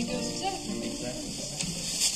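A quiet lull between a spoken announcement and the tune: a few faint held instrument notes and low murmur of voices.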